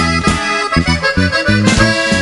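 Norteño band playing an instrumental passage of a corrido: button accordion carrying the melody over electric bass and drums in a steady dance rhythm.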